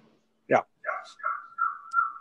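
A short spoken 'já', then a high, thin, steady whine that wavers slightly and breaks briefly now and then.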